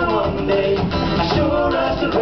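Live folk-rock band playing an instrumental passage: fiddle over acoustic guitar and electric bass.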